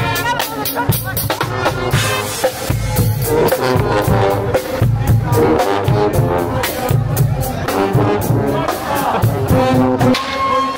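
Guggenmusik carnival marching band playing live: trumpets, trombones and sousaphone over a drum kit and bass drum keeping a steady beat.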